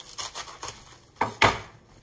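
Chef's knife cutting into the hard core of a green cabbage with a faint crunching scrape, then two knocks on a wooden cutting board a little past a second in, the second louder.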